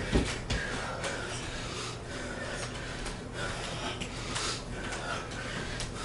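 Hard, labored breathing of two people doing bodyweight squats, winded late in a long high-repetition workout, with repeated noisy breaths in and out. A couple of low thumps come in the first half-second.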